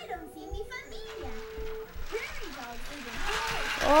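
Toddlers' babble and vocal sounds during play, with a short held note about a second in and a rustling noise building near the end.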